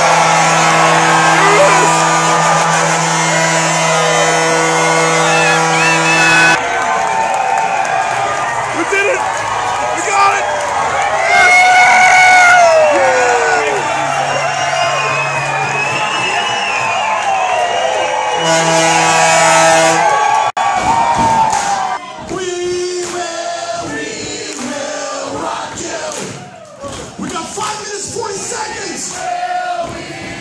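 A packed bar crowd of hockey fans cheering, whooping and yelling in celebration. A low, steady horn sounds over them for the first six seconds or so and again briefly about two-thirds of the way through. The crowd noise turns choppier and more broken-up near the end.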